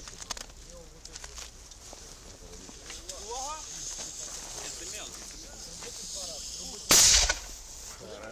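Small replica cannon firing: one loud, sharp bang about seven seconds in.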